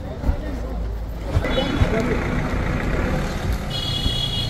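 Crowd chatter, several people talking at once, over the low running of an SUV's engine as it moves off. Short high-pitched beeps sound about a second and a half in and again near the end.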